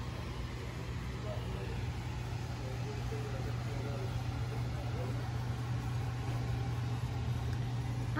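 A steady low hum, with faint voices in the background.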